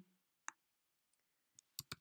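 Faint clicks from a computer mouse and keyboard: a single click about half a second in, then a quick run of three near the end.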